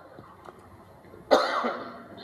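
Quiet room tone, then a man coughs once with a sharp, loud onset just past the middle, fading away over about half a second.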